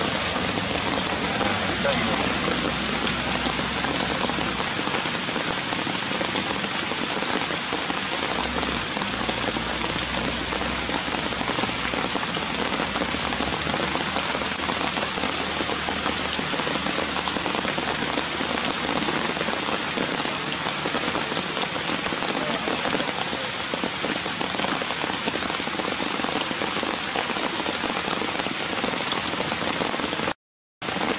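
Heavy rain falling steadily, an even unbroken hiss throughout.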